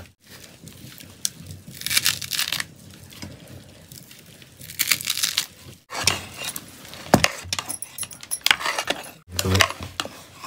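Fresh coriander leaves being cut with a knife and crushed by hand over a pot, heard as several short crisp crunching and tearing bursts.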